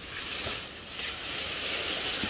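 Soft, uneven rustling of cut leafy tree branches, with no saw running.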